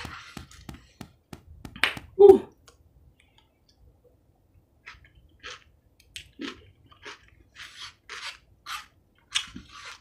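Close-up chewing and mouth sounds of a person eating spoonfuls of soft food from a small cup, with soft intermittent smacks and a short hum about two seconds in.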